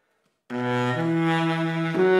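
Solo baritone saxophone starting to play about half a second in: a low held note, then a step to a second held note about a second in.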